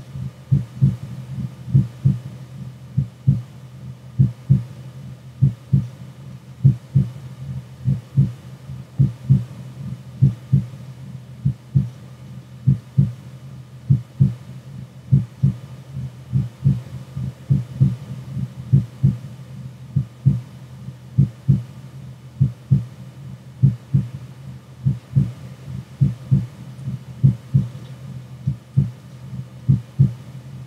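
Heartbeat: a steady, low lub-dub pulse repeating about once a second, with a faint steady hum beneath it.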